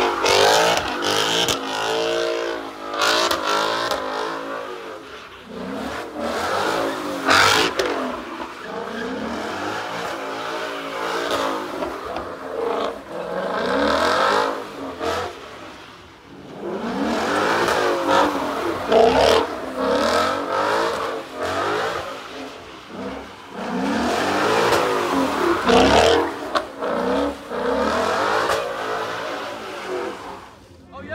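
Ford Mustang V8 revving hard, over and over, as the car spins donuts. The engine pitch climbs and falls repeatedly, with a few sharp cracks along the way.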